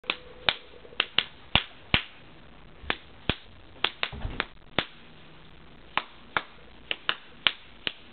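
Single hand claps, sharp and irregularly spaced, about eighteen in all with short pauses between runs, each followed by a brief echo off the wall.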